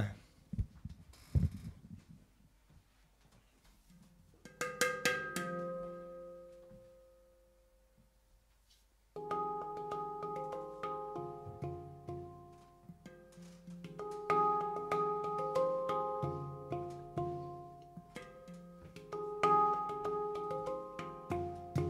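A handpan played with the fingertips. A few ringing notes sound about four seconds in and fade away. After a pause, a steady run of struck, bell-like notes begins about nine seconds in, as the piece starts.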